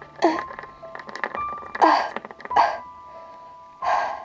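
A person coughing four times in short, harsh bursts, over background music with long held notes.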